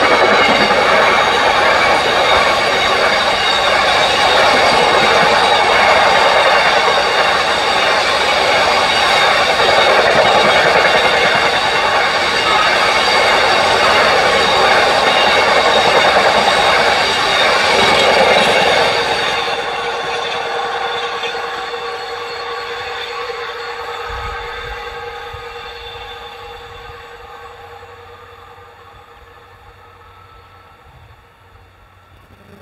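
A long freight train of bogie tank wagons rolling past close by, its wheels and running gear making a loud, steady rumble with several high steady ringing tones. About two-thirds of the way through, the last wagons pass and the sound fades steadily as the train draws away.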